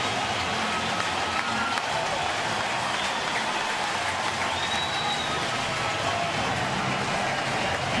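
Baseball stadium crowd cheering and applauding steadily for a home run.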